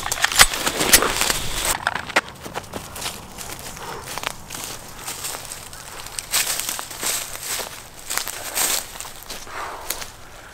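Footsteps crunching and rustling through dry leaf litter and twigs, irregular and uneven, with a few sharp clicks and knocks in the first second or two as a pistol is handled.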